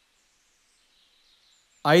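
Near silence with only a faint high hiss, then a voice begins speaking just before the end.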